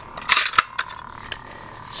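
Hard plastic clicks and a short rattle about half a second in as the Jedi accessory on a Hasbro BladeBuilders toy lightsaber hilt is worked by hand. A steady electronic hum from the switched-on toy lightsaber runs underneath.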